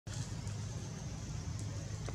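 Steady low rumble of outdoor background noise with a faint high hiss over it; no distinct event stands out.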